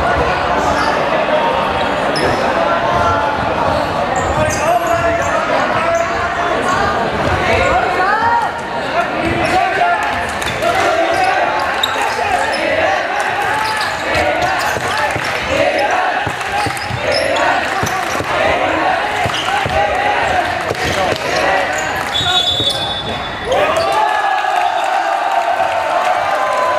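Basketball being dribbled and bounced on a wooden gym floor under many spectators' voices shouting, all echoing in a large hall. A short high referee's whistle blast sounds near the end.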